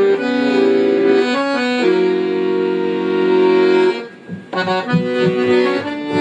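Dino Baffetti piano accordion playing live, with sustained chords and melody and a long held chord in the middle. There is a brief break about four seconds in, then shorter chords over bass notes.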